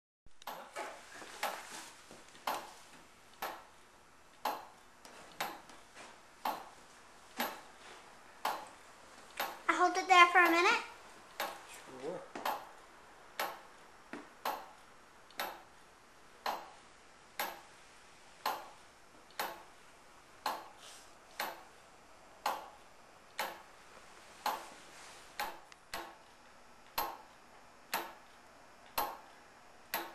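1914 E. Howard and Co. tower clock's escapement ticking steadily, about one sharp tick a second, as the pendulum swings.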